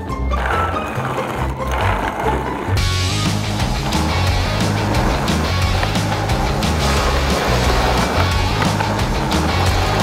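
Background music with a steady bass line over the rough rolling of a 3D-printed skateboard's hard PLA wheels on concrete pavement. The rolling noise grows much louder about three seconds in.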